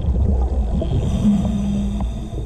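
Underwater noise picked up through a diver's camera housing: a dense low rumble, with a short steady hum starting a little over a second in.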